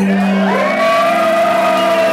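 Live band music, loud: about half a second in, a held note slides up in pitch and is then sustained.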